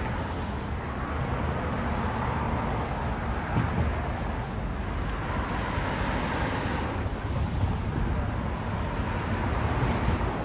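Steady city street traffic noise from cars passing on the road, with wind rumbling on the microphone.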